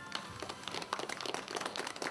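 A small seated audience applauding: many quick, irregular hand claps, fairly faint, building slightly towards the end.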